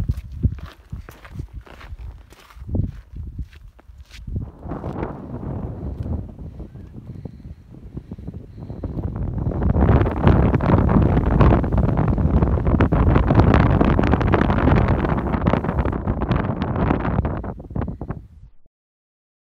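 Footsteps on a rocky trail for the first few seconds, then wind buffeting the microphone, which grows loud about nine seconds in.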